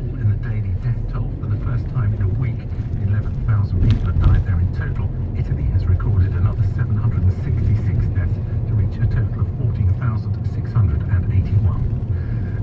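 Steady low rumble of a car driving, heard from inside the cabin, with a radio news voice talking underneath it.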